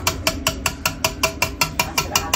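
KitchenAid stand mixer running on low speed with its wire whisk, making a rapid regular clicking of about seven clicks a second over a low motor hum as it mixes.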